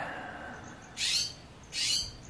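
Blue jay calling: two short, harsh calls, about a second in and near the end.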